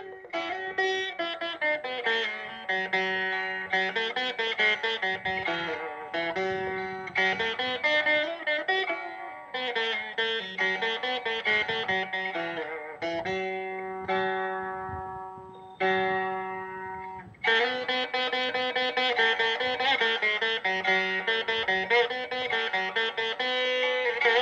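Solo veena playing Carnatic music: plucked notes with sliding pitch bends. About halfway through, one long note rings and fades before a fresh pluck; in the last third the notes come in quick, dense runs.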